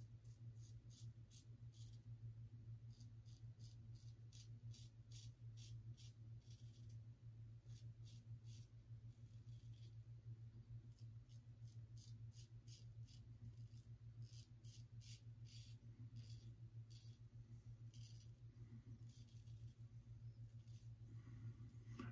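Faint, crisp scratching of a Gillette Tech safety razor with a Kai blade cutting lathered stubble on the neck, in many short strokes, over a steady low hum.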